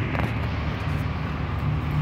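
Steady outdoor background noise: an even rushing hiss with no distinct events.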